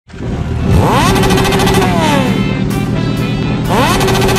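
Motorcycle engine revving twice, its pitch rising sharply and then falling away, over background music with a steady beat.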